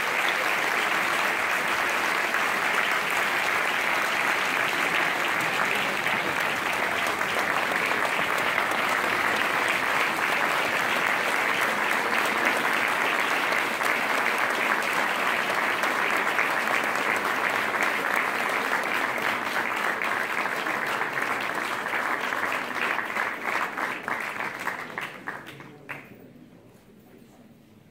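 Audience applauding steadily, thinning out and dying away near the end.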